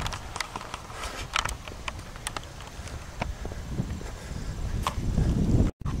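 Walking outdoors with a handheld camera: scattered light clicks and scuffs from footsteps and camera handling over a low wind rumble on the microphone. The rumble grows near the end, and the sound cuts out abruptly for an instant just before the end.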